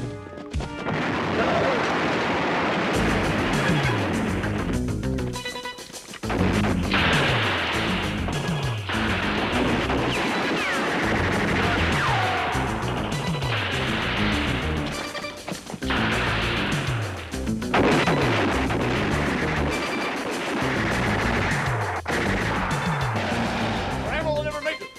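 Film-soundtrack gunfight: rapid automatic rifle fire and crashing impacts in long stretches with brief breaks, mixed with action music.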